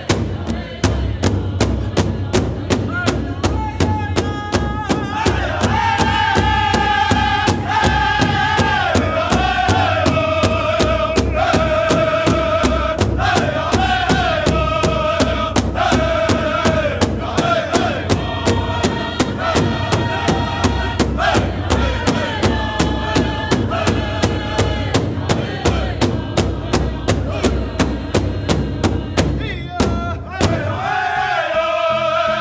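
Southern-style Oklahoma pow-wow song: a drum group singing together in high voices over a big drum struck in a steady, even beat. The melody falls in steps from phrase to phrase.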